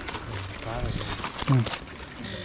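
People's voices: faint talk and then a short, loud voiced sound about one and a half seconds in, with a few small clicks around it.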